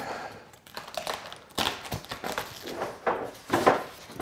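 Styrofoam packing blocks being handled and turned over: a scatter of light knocks and rubbing scrapes, several times.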